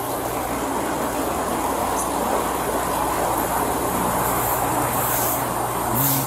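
Steady rushing noise with a low hum under it, picked up by a police body camera's microphone and building slightly over the first seconds.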